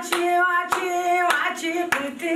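A woman singing a Zazaki folk song in long held notes, with hand claps keeping a steady beat, about four claps in two seconds.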